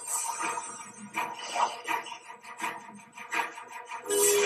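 Film soundtrack of an underwater fight scene: quiet background music with irregular short knocks and hits.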